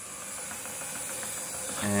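Cordless drill converted into a propeller drive, run from a lithium battery pack through a motor speed controller and spinning its shaft and propeller in air: a steady motor whine and hiss that comes up to speed in the first half-second, then runs evenly.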